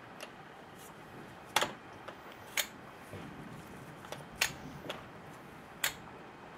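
Four sharp metallic clicks and a few softer knocks of hand tools being fitted onto a chainsaw's clutch, spaced about a second apart.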